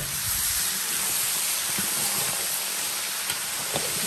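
Guinea fowl pieces with chopped tomato and onion sizzling in a large pan, giving a steady frying hiss.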